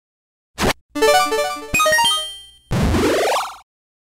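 Cartoon sound-effect stinger: a short sharp hit, then a quick run of plinking notes climbing in pitch, then a rising slide that cuts off suddenly.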